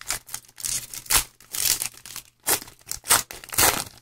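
A trading-card pack wrapper being torn open and crinkled by hand, in a string of short, irregular rustling bursts.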